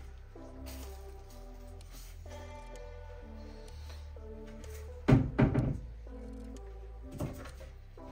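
Background music of soft, steady held notes. About five seconds in, a quick cluster of loud knocks, and a smaller knock a couple of seconds later.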